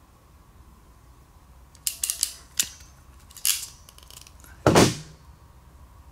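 Hand crimp tool for injector connector terminal pins clicking as it is squeezed and worked onto a pin and wire. There are several short, sharp clicks from about two seconds in, and the loudest snap comes near the end.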